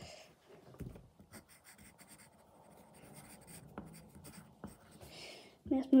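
Graphite pencil scratching on paper in short, faint strokes as a signature is written.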